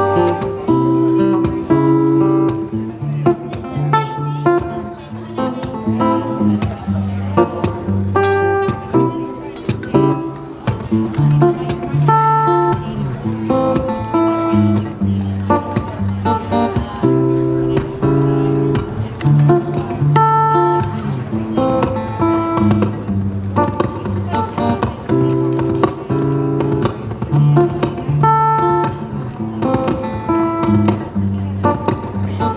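Acoustic guitar played live over looped layers of guitar and percussion: plucked melody notes and a bass line with regular percussive hits keeping a steady groove.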